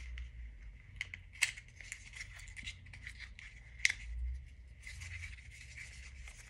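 Light clicks and rustles of a small cardboard lipstick box being opened and handled, with two sharper clicks about a second and a half and four seconds in.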